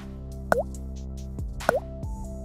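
Background music with steady held chords, overlaid by three short blips, each with a quick dip in pitch: one at the very start, one about half a second in and one near the end.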